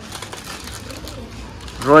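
Low background noise, then near the end a man's voice saying a drawn-out word in a wavering, sing-song pitch.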